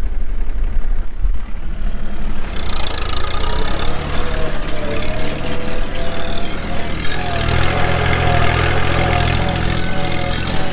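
Open-station farm tractor's engine running steadily as it pulls a four-row planter across a rough field. A wavering higher tone joins over the engine from about two and a half seconds in.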